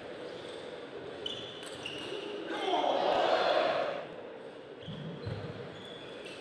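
A table tennis ball clicking off rackets and table in a fast rally, then, about two and a half seconds in, a loud shout lasting over a second as the point ends, echoing in a large hall.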